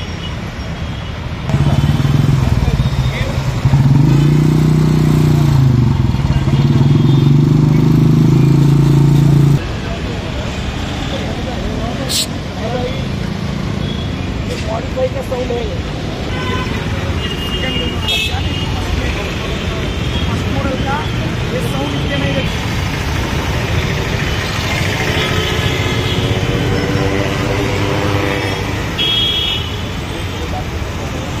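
A motor vehicle engine running close by: a loud, steady low hum whose pitch dips briefly a few seconds in, cutting off suddenly near ten seconds. After it, street traffic noise with people talking in the background.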